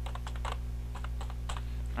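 Computer keyboard keys clicking in a quick run of keystrokes as a word is typed, over a steady low electrical hum.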